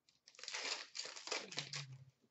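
Foil wrapper of a hockey card pack crinkling as the pack is handled and opened, a dry rustle lasting about a second and a half.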